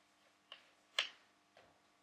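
Chalk striking a blackboard during writing: two sharp clicks about half a second apart, the second louder, then a fainter tap.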